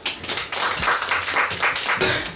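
Audience clapping: many hands applauding together.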